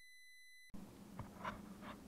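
Faint high electronic beep, steady and a little buzzy, lasting under a second over a dead-silent dropout at an edit glitch; then quiet room tone with a few soft ticks.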